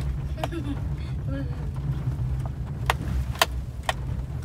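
A car cabin on a rough dirt road: the engine and tyres give a steady low rumble, and every so often there is a sharp click or rattle as the car jolts over the uneven surface.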